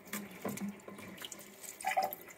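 Thin stream of water running from a reverse osmosis drinking-water faucet into a stainless kitchen sink and into a small plastic bottle held under the spout. Small knocks of the bottle being handled, the loudest near the end as it is brought under the stream.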